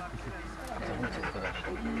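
A dog panting steadily, with people talking quietly in the background.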